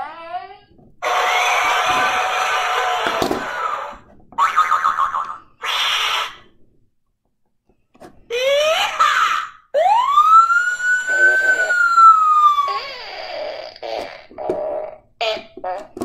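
A handheld toy sound-effects machine playing a string of canned effects one after another. There are short rising sweeps, hissy bursts, and a long whistle-like tone that rises and then slowly falls.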